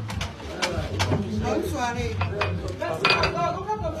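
Dishes and cutlery clinking and clattering as they are handled behind a bar, a string of separate clinks with a louder clatter about three seconds in.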